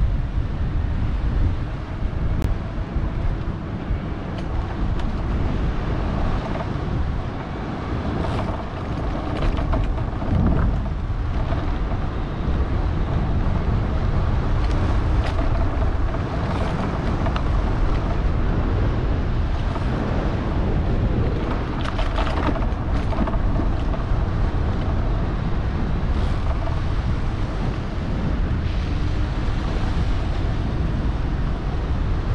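Wind rushing over the microphone while riding along a gravel track, with tyres rolling on the gravel and scattered small ticks and crunches.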